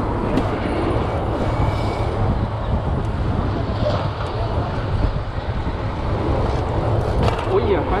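Steady rushing noise of a mountain bike ridden fast along a city street, with car traffic around it. A man's voice comes in near the end.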